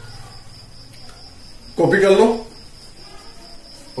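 A man's voice speaks one short phrase about two seconds in. Under it a faint, steady high-pitched tone, like an insect's continuous trill, runs throughout over a low hum.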